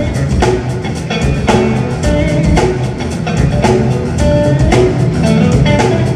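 A live blues-rock band playing: electric guitar holding and bending notes over a drum kit, with a hit about twice a second.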